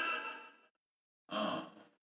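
A man's voice trailing off at the end of a phrase, then a moment of complete silence, then a short audible breath taken close to the microphone.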